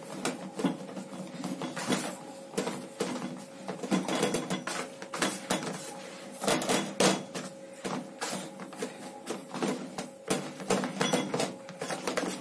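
Chapati dough being kneaded by hand in a plastic basin: irregular soft thuds and knocks, a few a second, as the fist presses and folds the dough against the bowl.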